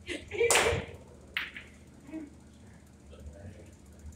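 A pool cue strikes the cue ball about half a second in, then a sharp click of ball hitting ball comes about a second later, followed by a few fainter clicks as the balls roll and touch.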